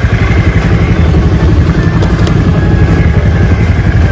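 Honda Vario 110 carburettor scooter's single-cylinder four-stroke engine idling steadily, with a fast, even pulse. It keeps running on its newly fitted regulator-rectifier while the turn signals draw current; with the old, faulty regulator it would stall when the signals or horn were used.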